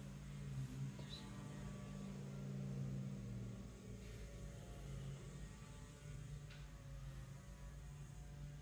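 Low steady hum that swells and fades slightly, with a few faint ticks.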